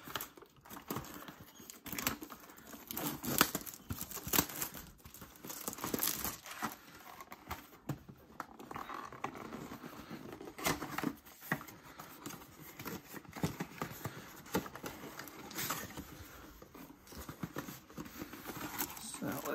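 Plastic wrapping crinkling and tearing as a shrink-wrapped cardboard trading-card box is unwrapped and opened, with irregular rustles and crackles.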